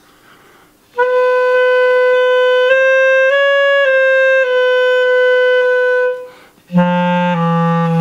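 Schwenk & Seggelke Model 2000 German-system clarinet being played: a held note that steps up twice and back down, then, after a short break, a much lower note in the bottom register. Its keywork has all the adjusting screws backed off, a deregulated setting that the player says leaves the clarinet unplayable.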